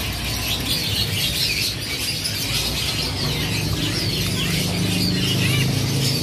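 Many small caged songbirds chirping and twittering together, with quick high notes sliding up and down, over a low steady hum that grows louder about halfway through.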